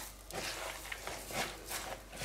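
Knife blade scraping chopped herbs out of a plastic bowl into a bowl of grated vegetables: a series of faint, soft scrapes and rustles. A spoon starts stirring the wet mixture near the end.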